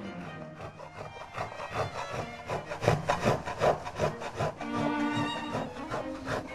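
A hand tool worked in quick, even strokes on wood, about three or four strokes a second, fading out near the end, over music.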